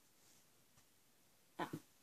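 Near silence: room tone, then a short falling-pitch "oh" from a young girl near the end.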